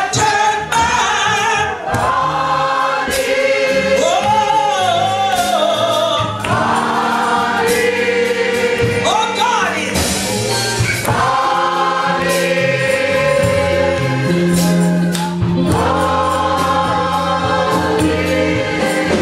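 Gospel song sung by a woman into a handheld microphone, with a congregation singing along over instrumental accompaniment with held bass notes.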